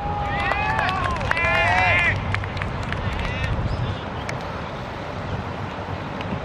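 Young footballers' excited shouts, two long high yells in the first two seconds and a shorter one a little after three seconds, as a goal goes in. Steady wind noise on the microphone underneath.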